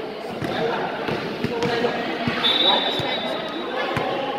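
A basketball bouncing a few times on an indoor court, each bounce echoing in a metal-walled hall, over the chatter of players and spectators. About halfway through, a steady high whistle tone sounds for over a second.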